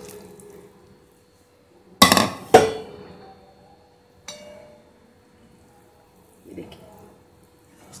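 Kitchen utensils knocking against a cooking pan: two sharp clinks with a short ring about two seconds in, half a second apart, then a lighter clink a couple of seconds later.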